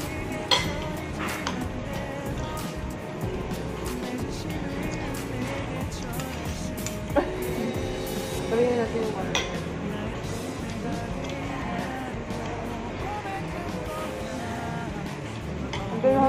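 Background music with a steady level, under low voices and a few sharp clinks of metal cutlery against plates.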